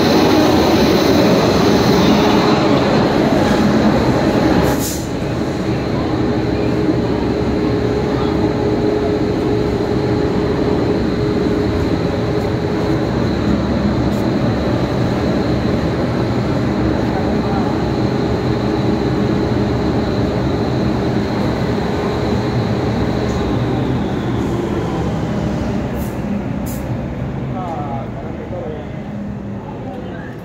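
Electric locomotive standing at the platform with its equipment running: a loud, steady hum carrying a thin high whine. The sound drops a little about five seconds in.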